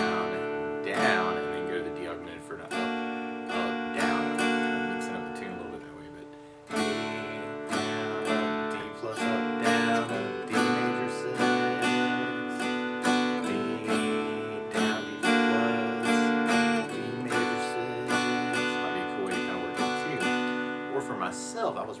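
Acoustic guitar strummed in a down-and-up pattern, moving between D, D augmented and D major six chords. About five seconds in a chord is left to ring and fade, then the strumming starts again.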